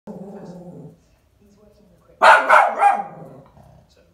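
Chihuahua barking: three quick, sharp, loud barks a little past two seconds in. The dog is barking at an inflatable Santa it dislikes.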